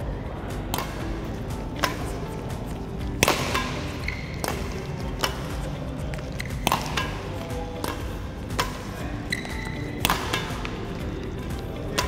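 Badminton rackets striking shuttlecocks in a fast multi-shuttle drill: about a dozen sharp hits spaced roughly a second apart, the feeds and the returned smashes, over steady background music.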